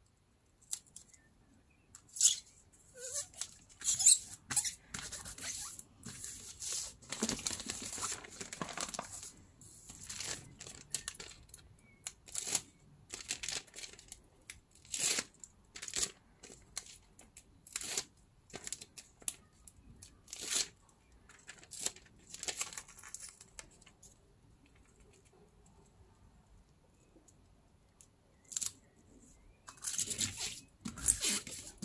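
Thin clear acetate plastic crinkling and rustling as it is handled, with double-sided tape peeled and pressed down: a long run of short, sharp crackles that thins out after about 23 seconds.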